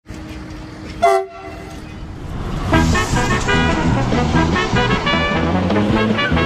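One short blast of a railway horn about a second in, over a steady low hum. Then music with a steady beat comes in and carries on.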